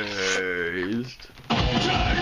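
A voice holding one long note that slides down and then back up in pitch, with the band's beat dropped out. About one and a half seconds in, loud heavy rock music cuts back in suddenly.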